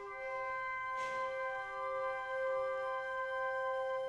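Concert band opening a piece with soft, long held notes that begin out of silence and sustain steadily.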